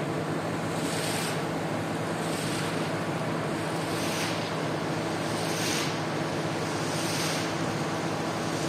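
Floor squeegee pushed in repeated strokes across a soaked rug, sweeping dirty water over the wet floor with a swish about every second and a half. A steady machine hum runs underneath.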